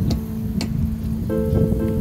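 Low noisy rumble of wind on the microphone, under a few steady held tones of soft background music.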